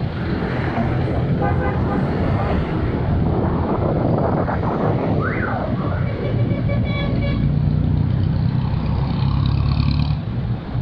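Riding in city traffic: steady engine and road noise from the motorcycle and the jeepneys around it, with a few short horn toots in the middle and near the end.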